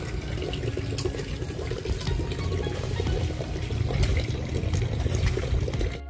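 Steady rushing of water running along a drainage ditch.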